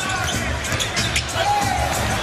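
Live basketball game sound: the ball dribbling on the hardwood court over arena music and crowd noise, with a short squeak about one and a half seconds in.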